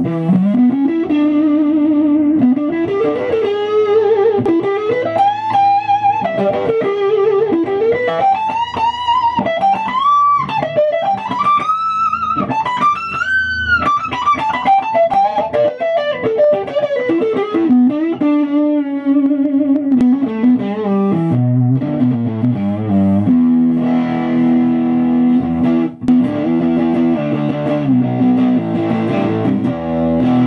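Rushmore Superbird electric guitar with Fralin high-output pickups, played on the neck pickup in humbucker mode. A lead line of bent, gliding notes climbs to a high peak about halfway through, then falls back into lower, chordal riffing for the second half.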